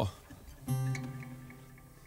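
A single chord strummed on an acoustic guitar about two-thirds of a second in, left to ring and fade away. A short spoken "oh" comes right at the start.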